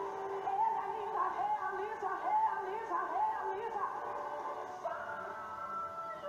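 A gospel song playing, with a woman's voice singing a gliding, ornamented melody over the accompaniment.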